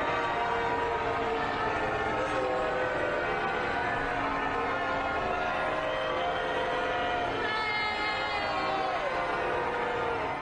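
Church bells pealing steadily with many overlapping ringing tones, over an outdoor crowd booing.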